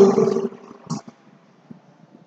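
A man's voice draws out a word for about half a second, with a short hiss just before one second in. After that it is quiet apart from a few faint taps of chalk on a blackboard.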